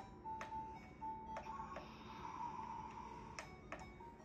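Toy fire truck's electronic melody playing faintly from its small speaker, a few short beeping notes and then a hazier held tone, with a few sharp clicks in between.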